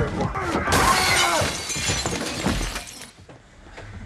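Glass shattering in a film fight scene: a crash of breaking glass that sprays on for about two seconds after a few sharp blows and shouts, then dies away near the end.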